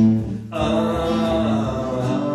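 Acoustic guitar strummed in a blues song, its chords ringing on, with a short break about half a second in before the next strum.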